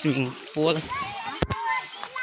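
People talking, children's voices among them, with a single sharp click about one and a half seconds in.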